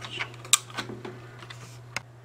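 Sleeve rustling and a few sharp clicks from a hand working a computer, one louder click about halfway through and another at the very end, over a steady low hum.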